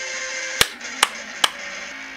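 Static-like electronic hiss from the music video's glitch transition, broken by three sharp clicks a little under half a second apart. The hiss cuts off near the end and a low steady tone starts.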